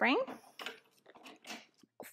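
A few faint metallic clicks as the springs of an SPX Max Pilates reformer are unhooked and rehooked on the spring bar, changing the load to a single red spring.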